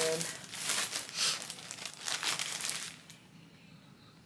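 Packaging crinkling and rustling in irregular bursts as clothes are handled, stopping about three seconds in.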